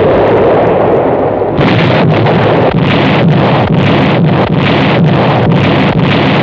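Heavy artillery fire and shell explosions: a continuous rumble, joined about a second and a half in by a rapid run of sharp reports, two or three a second.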